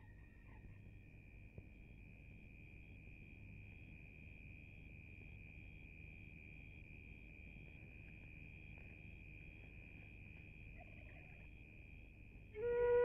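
Near silence: a faint steady high-pitched tone held throughout, with a fainter even pulsing just above it, over low hiss.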